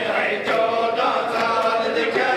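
Men's voices chanting a mourning lament together during matam, with sharp hand slaps on the chest about once a second.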